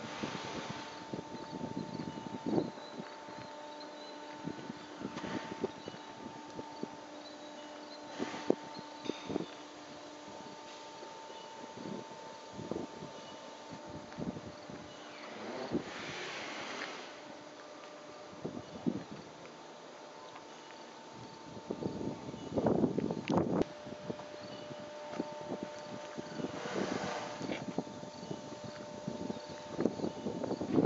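Wind gusting on the microphone, with scattered knocks from handling the camera and a faint steady hum underneath; the aircraft engine is not running.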